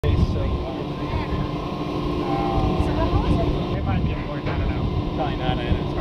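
Strong sea wind buffeting the camcorder microphone in an irregular low rumble, with a steady hum underneath.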